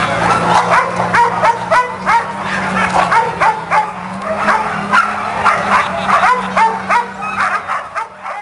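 Harnessed sled dogs barking and yipping, several at once in quick, overlapping succession, typical of a racing team keyed up before its start. A low steady hum runs underneath.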